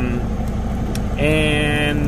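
Heavy truck diesel engine idling steadily at about 600 rpm, a low rumble heard from inside the cab. A drawn-out spoken "uh" is held over it from a little past halfway.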